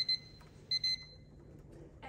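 An electronic alarm beeping: two short bursts of rapid high-pitched beeps, one at the very start and one about three-quarters of a second in.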